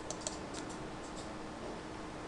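A few faint, light clicks of a computer mouse, spaced irregularly over the first second or so, against quiet room tone.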